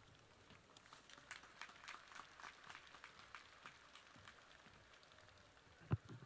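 Faint, scattered audience applause, made of many separate hand claps, with a single thump near the end.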